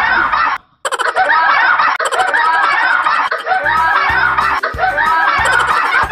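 A group of teenagers laughing hard and shrieking. The sound drops out for a moment under a second in at an edit, and a bass-heavy music beat comes in under the laughter a little past halfway.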